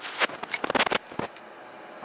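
A rapid burst of crackling and clicking for about a second, then it drops away to a quieter background: handling noise on the camera's microphone as it is moved.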